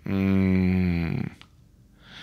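A man's drawn-out hesitation sound while pondering a question, held on one low, level pitch for just over a second and dipping slightly as it trails off.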